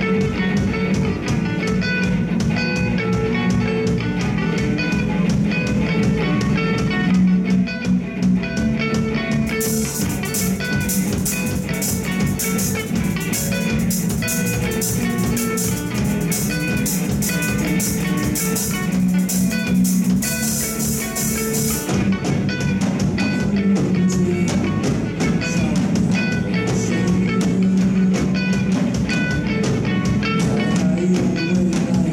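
Live rock band playing: electric guitars, bass guitar and drum kit, a dense steady groove. Through the middle stretch a bright cymbal wash rides over the band, then drops back.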